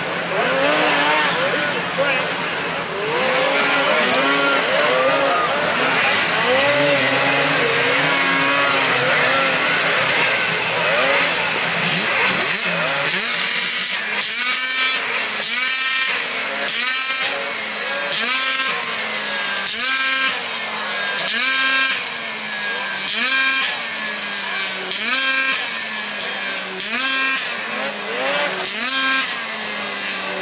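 Several 600cc two-stroke race snowmobiles running hard together around a snocross track, their engines at high revs. From about halfway, one sled's engine dominates, repeatedly revving up and backing off about every second and a half as the rider works the throttle.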